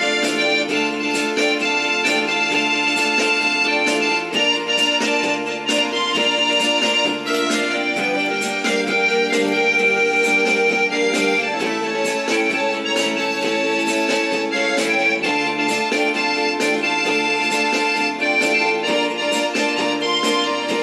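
Electronic keyboard playing an instrumental introduction, with sustained chords and melody over a steady, evenly spaced beat.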